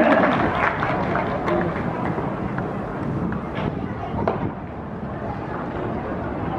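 Spectators chatting in the stands of a ballpark, many voices overlapping with no one voice standing out, and a few short sharp knocks.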